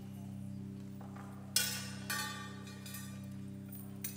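Acoustic guitar struck twice, about a second and a half and two seconds in, each chord ringing and fading, with a couple of lighter notes near the end, over a steady low drone.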